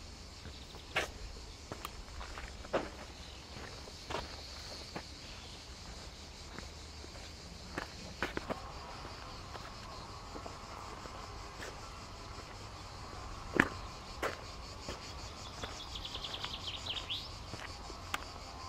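Footsteps on a dirt path, irregular, with a few sharper ones standing out, over a steady high buzz of cicadas in the pines. Near the end the buzz swells into a pulsing rattle.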